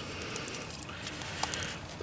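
Faint handling of the upstream O2 sensor's plastic wiring connector: a few small clicks and rustles as it is worked free of its bracket.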